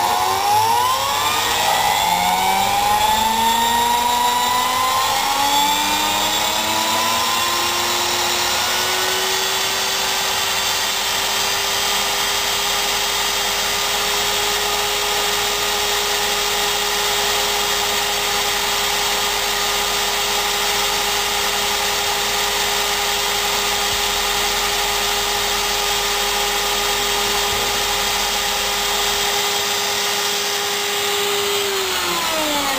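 Variac-controlled electric drill spinning a small generator up to speed. Its motor whine rises in pitch over the first ten seconds or so, then holds at one steady pitch, at about 2,600 rpm, while the generator feeds four lamps at 13.5 volts.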